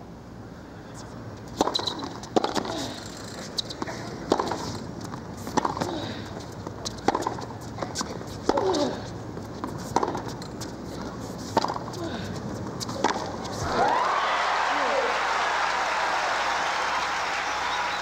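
Tennis rally: a ball struck back and forth with racquets, about nine sharp hits roughly a second and a half apart. About fourteen seconds in, as the point ends, the crowd breaks into applause that carries on.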